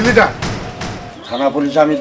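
A man's voice in short bursts of speech, with a dull thump just after the start.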